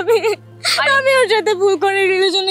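A young woman crying and whimpering in a high, wavering voice. It breaks off for a moment and comes back with a sharp in-breath about half a second in.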